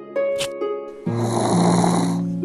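A cartoon snoring sound effect: one long snore that begins about halfway through, over background music with held notes.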